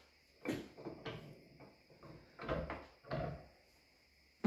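Several knocks and short scrapes of a cast-iron lathe compound slide being handled and set down in the jaws of a bench vise, spread through the few seconds.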